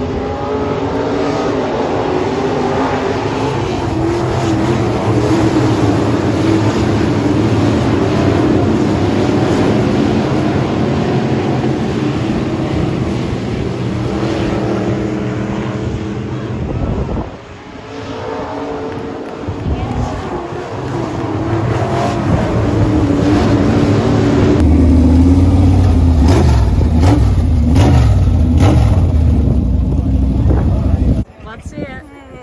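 A pack of sport modified race cars running laps on a dirt oval, the engines' note rising and falling as they circle. The sound drops briefly about 17 seconds in, and from about 25 seconds a louder, deeper engine rumble takes over.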